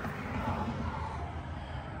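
Steady low background rumble of outdoor ambient noise, with no distinct event standing out.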